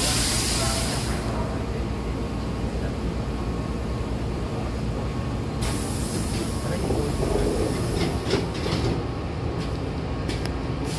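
Hankyu Kyoto Line train's pneumatic double sliding doors closing over the steady low rumble of the stopped train. A hiss of air starts just before six seconds in and lasts about two and a half seconds, then a few sharp knocks follow as the door leaves come together and shut.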